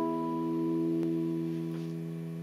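Open high and low E strings of a nylon-string classical guitar, plucked together, ringing on and slowly fading: one note sounding two octaves apart.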